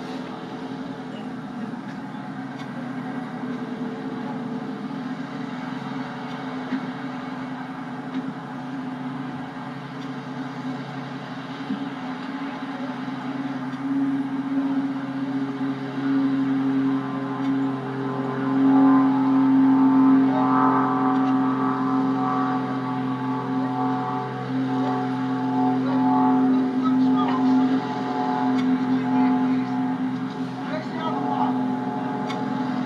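Light propeller aircraft's piston engine idling steadily, its level rising and falling a little, louder from a little past halfway.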